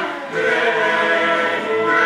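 A group of young children singing a song together in held notes, with a short dip in level just after the start.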